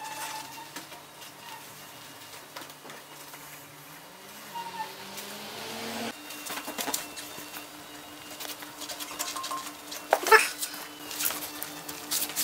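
A cloth wiping over a motorcycle's paintwork and chrome, with short scattered rubbing noises and one louder sharp rub about ten seconds in. A steady low hum sits underneath and changes abruptly about halfway through.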